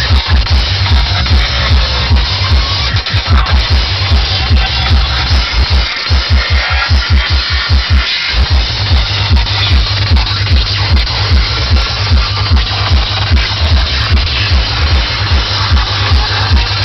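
Loud dark psytrance played by a DJ through an outdoor sound system, with a fast, even kick drum and a heavy rolling bassline. About six seconds in the deep bass drops away for roughly two seconds, leaving the beat alone, then comes back in full.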